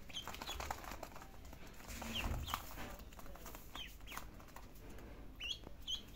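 Ducklings peeping: short, high calls scattered through, coming thicker near the end, over light taps and scratches.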